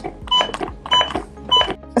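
An automated external defibrillator's CPR metronome beeping to pace chest compressions, one short beep about every two-thirds of a second, three in all. That is a pace of roughly 100 compressions a minute.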